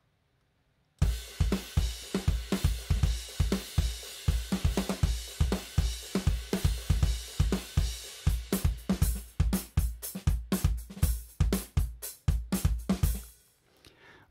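UJAM Virtual Drummer BRUTE software drum kit playing a mid-90s-style rock groove at 96 bpm, with kick, snare, hi-hat and cymbals. It starts about a second in, gets busier in its second half and stops shortly before the end.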